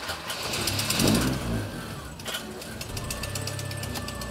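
Citroën CX car engine running just after being started, louder for a moment about a second in and then settling to a steady run with a fine rapid ticking.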